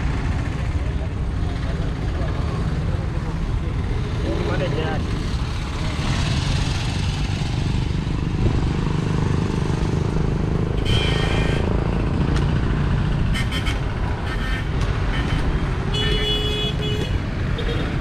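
Roadside traffic with a steady heavy low rumble, and short vehicle horn toots a little past the middle and again near the end.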